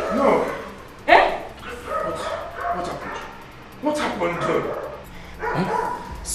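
People shouting at each other in a heated argument, in several loud, rising outbursts.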